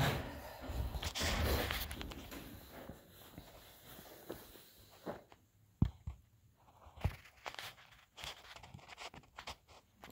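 Rustling and bumping of a phone camera being handled and set in place, then scattered footsteps and short knocks, with two sharp knocks about a second apart just past halfway.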